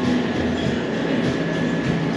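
Steady hum of cooling machinery with a thin, constant high tone over it, and faint voices in the background.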